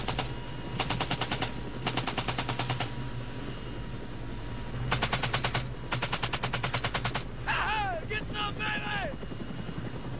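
Four short bursts of machine-gun fire from a helicopter door gun, at about ten shots a second, over the steady drone of the helicopter. Near the end a man yells, his voice falling in pitch.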